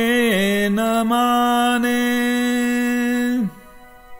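A man singing a Hindi film song unaccompanied, holding long notes with a quick dip in pitch just after the start, then letting the phrase fall away with a downward slide about three and a half seconds in, followed by a pause.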